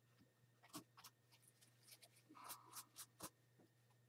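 Faint dabbing and rubbing of a damp sponge on a painted canvas, a scatter of light taps and scrubs, mostly between one and three and a half seconds in, lifting off freshly laid acrylic paint with water. A low steady hum sits under it.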